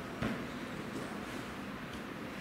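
A single soft thud about a quarter-second in, from a gymnast's feet and body landing on a padded gymnastics floor mat, over steady hall noise.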